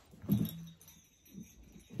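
A small dog makes a brief low vocal sound about a third of a second in, holds a low note for about half a second, then gives a fainter short sound.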